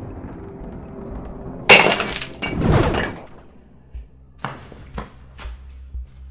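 A dropped cup hits the floor with a sudden loud crash, followed by a second, shorter clattering crash and then three light clinks as it settles.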